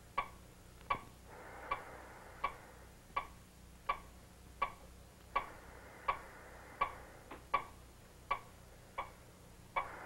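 Operating-room heart monitor (cardioscope) clicking in time with the patient's heartbeat, a short sharp click about every three quarters of a second. A faint soft hiss swells and fades twice behind it.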